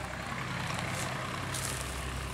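A 1949 Blackstone 38 hp stationary diesel engine running steadily with a low, even hum.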